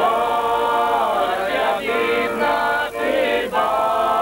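A small group of men singing a Ukrainian folk song together to accordion accompaniment, in long held notes broken by short pauses between phrases.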